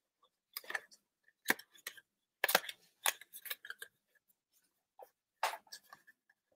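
Cardstock box being handled, pressed and folded by hand: paper rustling and crinkling in short, separate bursts.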